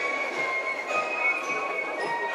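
German corps of drums (Spielmannszug) playing a march: shrill flutes holding steady high notes over snare and bass drum beats.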